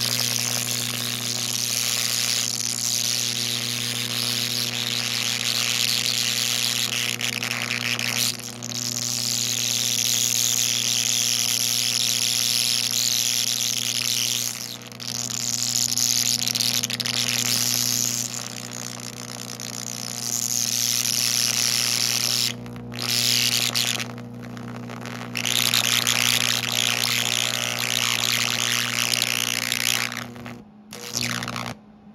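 Twin carbon arc torch with 3/8-inch carbon rods burning an arc against a steel concrete stake to heat it: a loud, steady hiss over a steady low hum. The hiss dips briefly several times as the arc wavers.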